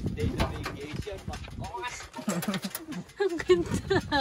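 People talking in short phrases, untranscribed, mostly in the second half.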